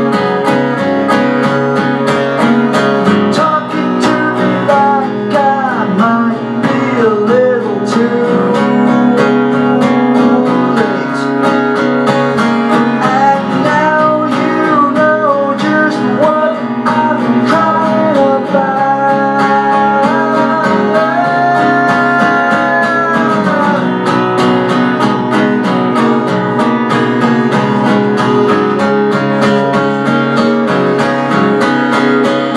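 Live solo acoustic guitar strummed in a steady rhythm, with a man singing over it through most of the middle and the guitar carrying on alone near the end.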